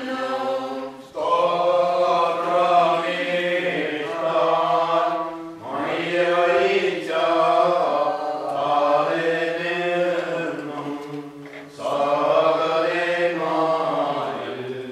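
Syriac Orthodox liturgical hymn chanted by voices in long, sustained phrases, with short breaths between phrases about a second, five and a half seconds and twelve seconds in.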